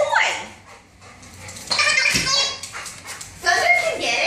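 Wobble Wag Giggle Ball's internal noise tubes giggling as the ball rolls: several short warbling bursts that rise and fall in pitch, at the start, about halfway and again near the end.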